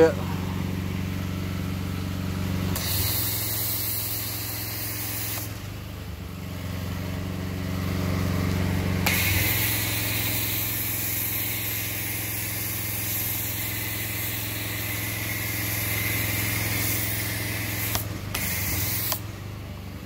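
Pressure washer running with a steady engine hum while its foam cannon sprays soapy foam in hissing stretches: a short one about three seconds in, a long one from about nine to eighteen seconds, and a brief one near the end.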